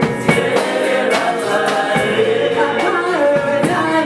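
Live gospel worship song: a woman leads the singing with backing singers joining in, over electronic keyboard accompaniment with a steady beat.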